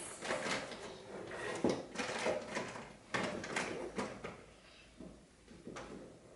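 A child rummaging through markers and art supplies: a scattered series of knocks, clicks and rustles a second or so apart, thinning out near the end.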